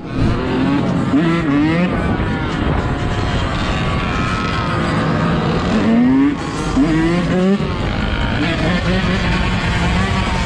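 Yamaha YZ125 two-stroke dirt bike engine revving up and falling back over and over while riding, with heavy wind noise on the microphone. Sharp rises in pitch come about a second in and again around six and seven seconds in.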